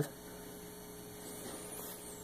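Steady low electrical hum, with a faint high squeak of a marker writing on a whiteboard about halfway through.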